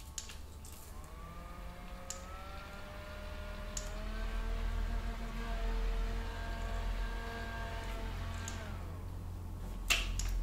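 Small handheld electric fan whirring: a thin motor whine that rises in pitch as it spins up over the first few seconds, holds steady, then drops away as it winds down near the end. A few faint clicks sound along the way.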